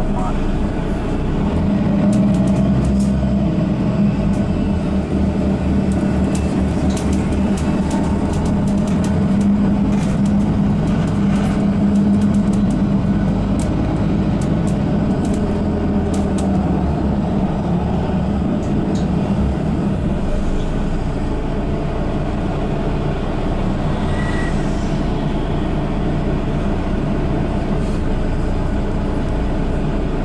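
Cabin sound of a Mercedes-Benz Citaro G articulated bus with Voith automatic gearbox under way: a steady engine and road drone that is strongest in the first half and eases off later, with scattered light clicks and rattles.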